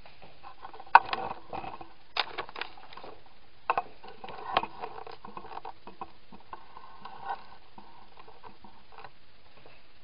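Handling noise as the camera is picked up, moved and set down: a string of sharp knocks and clicks, the loudest about a second in, with scraping and rustling between, dying away near the end.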